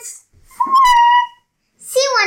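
A child's voice held on one high, squeaky note for about a second, dipping slightly near its end.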